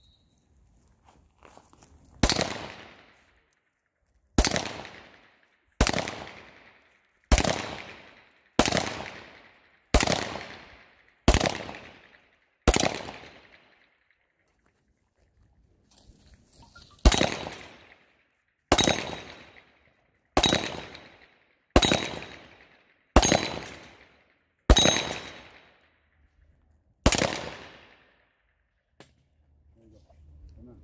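Pistol shots fired one at a time at a steady slow pace, about one every one and a half seconds, each with a short echo. Eight shots, a pause of about four seconds, then seven more.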